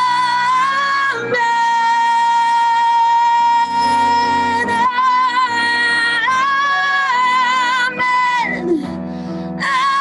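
Women's voices singing a worship song in long held notes with vibrato, over keyboard accompaniment.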